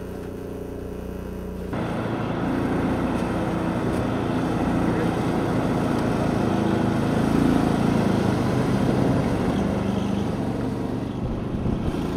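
A steady engine hum for the first couple of seconds, then an abrupt switch to the louder running of vehicles at road speed on pavement: engine drone mixed with road and wind noise.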